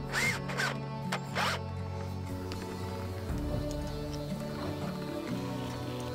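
A cordless drill-driver driving screws in short bursts, its motor pitch rising and falling with each squeeze of the trigger, over background music. The drilling stops about a second and a half in, leaving only the music.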